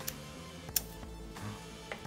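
Background music, with a few sharp clicks as the Macintosh Color Classic is switched on. The loudest click comes about three quarters of a second in.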